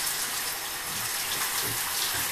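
Shower running: water spraying steadily from the showerhead.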